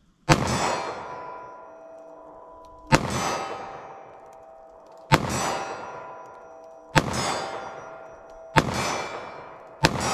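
Six shots from a .38 Special +P handgun, fired about two seconds apart. Each shot is followed by a steel target ringing with clear metallic tones that fade over a second or two.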